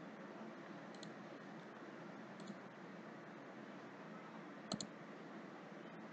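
Faint computer mouse clicks over a low steady hiss: single light clicks about one and two and a half seconds in, and a louder double click a little before the end.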